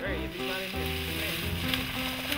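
Background music with held notes that change every half second or so, over a steady hiss.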